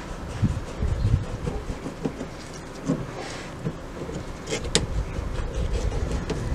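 Pliers working a hose clip on a van's coolant hose: a few scattered metal clicks, the sharpest about three-quarters of the way through, over an uneven low rumble.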